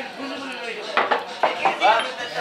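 Glass tej flasks clinking against each other and the metal kettle as honey wine is poured into them: a few sharp, separate clinks. Voices and chatter sound in the background.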